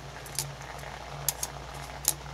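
A low, steady background hum with a few faint, sharp ticks scattered through it.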